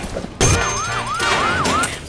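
Police siren sound effect: a fast wail of about four rising-and-falling sweeps that starts abruptly about half a second in and cuts off shortly before the end.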